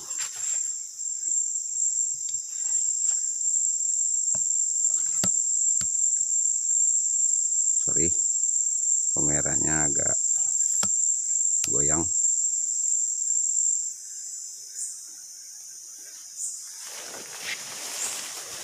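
A loud, steady, high-pitched drone of a rainforest insect chorus, which drops sharply to a quieter level about three-quarters of the way through. Small clicks and rustles of footsteps in the undergrowth and a few brief bits of voice sit under it.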